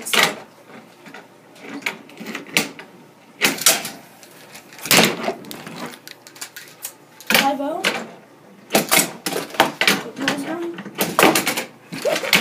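Hangnail handboard knocking and clacking against a wooden table and a metal pipe rail: sharp hits a second or two apart, some in quick clusters near the end, as tricks are attempted.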